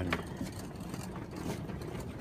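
Small wheels of a loaded hand cart rolling over a concrete path: a steady low rumble with irregular rattles and clicks from the crate and its load.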